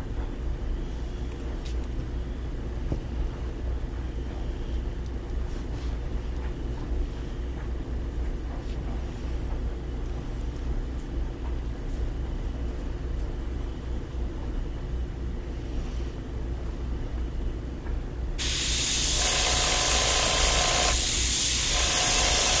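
A steady low hum, then about eighteen seconds in an airbrush starts spraying: a loud, even hiss of air and paint that holds to the end.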